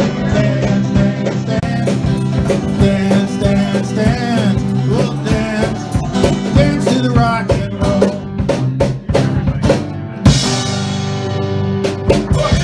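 Acoustic guitar strummed in a driving, percussive rhythm with a man singing over it, played live through a PA. About ten seconds in, a hard strum rings out before the rhythm picks up again.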